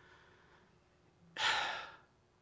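A man's single breathy sigh about halfway through, after a moment of near silence, picked up close on a headset microphone.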